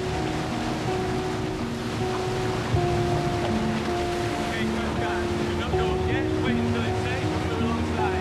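Rush of water and engines from rigid inflatable boats speeding over choppy sea, under a music score of long held notes that change pitch in steps.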